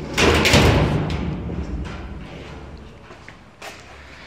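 Sheet-metal electrical panel door shut with a thud just after the start, its rattle fading away over about a second.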